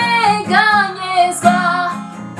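A woman singing held, gently bending notes over guitar accompaniment.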